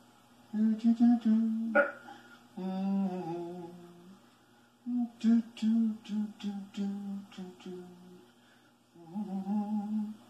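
A Muppet character's voice humming a cheerful tune in short notes and phrases, with brief pauses between them. It is heard through a TV speaker.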